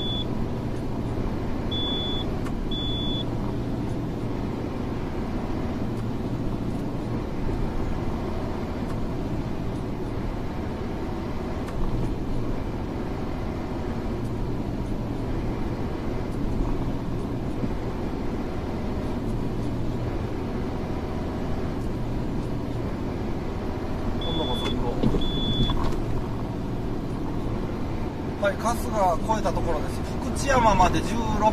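Steady engine and road noise inside a truck cab cruising on the expressway. Short high beeps sound in pairs, near the start and again a few seconds before the end.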